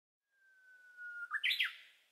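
A bird singing: one long, slightly falling whistled note that swells in loudness, then a quick phrase of higher notes ending in a falling note.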